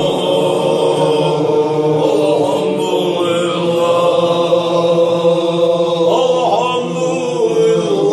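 Group of men chanting a seated Chechen zikr in unison. Many voices hold steady, drawn-out pitches, with a brief bend in the melody about six seconds in.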